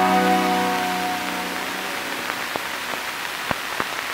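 An acoustic guitar chord ringing out and fading away over about two seconds, leaving a steady hiss with a few faint clicks.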